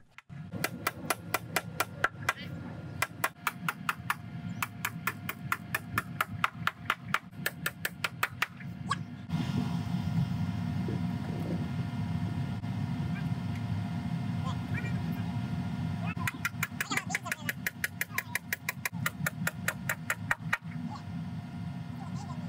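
Nails being driven into a wooden 2x8 header on a 4x4 post: runs of quick, evenly spaced hammer blows, several a second, stopping and starting between nails. From about nine seconds in, a steady low hum runs underneath, and the blows come back near the end.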